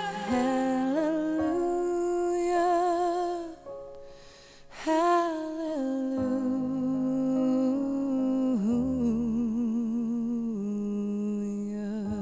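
A female voice sings long held notes with wide vibrato over soft grand piano chords. She pauses briefly for breath about four seconds in, then goes on holding notes.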